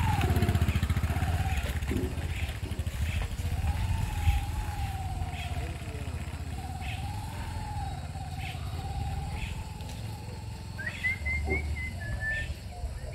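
Bajaj Discover single-cylinder motorcycle running at low revs while it picks its way, loaded, over a rough rocky dirt track. A wavering whine rises and falls with the throttle, and the sound fades as the bike moves away.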